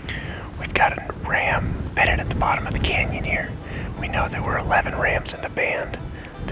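A man speaking in a whisper, close to the microphone, over a low rumble.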